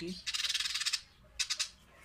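A pigeon fluttering its wet wings in the hand: a fast rattling flutter for under a second, then a second, shorter flutter about a second and a half in.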